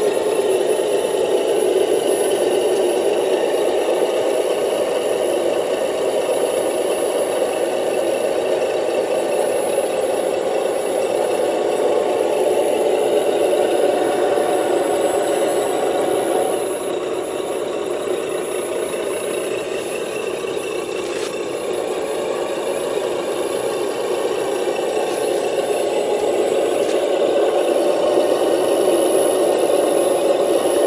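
Radio-controlled CAT 953 track loader model running with a steady engine-like drone as it crawls up onto a lowboy trailer. The sound dips slightly in level partway through and builds again near the end.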